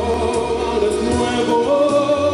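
A man singing long held notes with vibrato into a handheld microphone over musical accompaniment with a low bass line.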